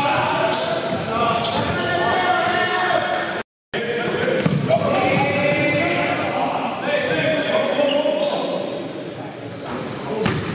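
Live game sound of a basketball game in a gymnasium: a ball bouncing on the hardwood floor and players' indistinct shouting. The sound drops out briefly about three and a half seconds in.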